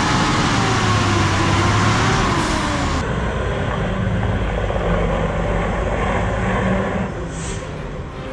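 Heavy lorry's diesel engine running under load, its pitch wavering for the first few seconds. After an abrupt change it gives way to a steadier low engine drone as a loaded multi-axle lorry pulls up the oil-slicked hairpin, its rear wheels spinning for grip.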